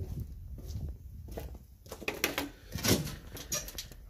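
Low rumble of wind and handling on a handheld phone's microphone, then a few scattered knocks and rustles in the second half.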